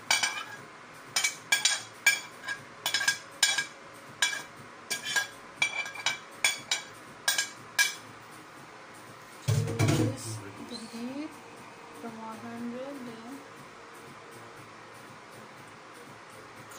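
Metal spoon clinking against a plate and the rim of a stainless steel pot, sharp clinks about twice a second for the first eight seconds, as chopped cilantro is knocked off into the soup. A low thump follows about ten seconds in.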